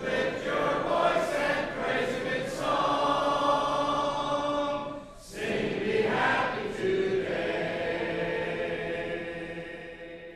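Congregation singing a hymn unaccompanied, many voices together in held notes. A short break comes about five seconds in, and the last phrase fades out near the end.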